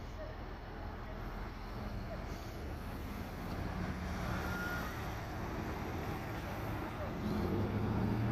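Steady low rumble of road traffic, with faint murmured voices under it.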